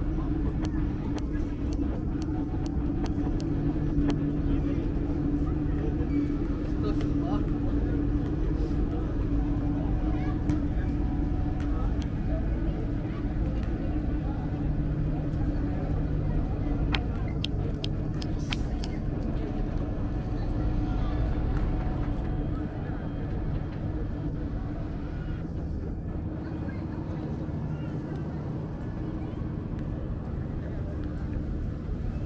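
Busy market street ambience: background chatter of many voices over a steady low mechanical hum, with a few sharp clicks a little past halfway. The hum and chatter ease slightly in the last third.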